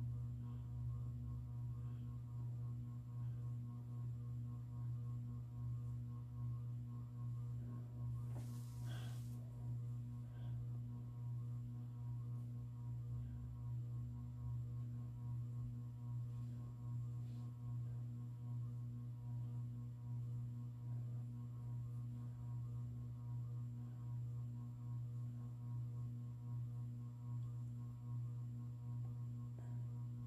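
Ceiling fan running with a steady low hum, with a brief soft rustle about nine seconds in.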